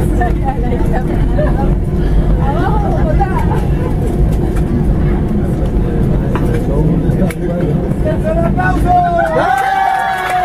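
Heavy, steady low rumble inside an Airbus A320 cabin as the airliner rolls on the wet ground after landing, with passengers chattering over it. The rumble eases about nine and a half seconds in as the voices rise.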